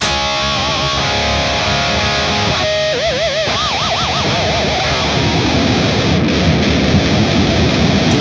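Jackson RRX24 MG7 seven-string electric guitar with EMG pickups played through heavy distortion, its Floyd Rose Special tremolo bar worked hard in a tuning-stability test. Held notes waver, wide fast pitch wobbles come about three seconds in, and a dense noisy stretch follows.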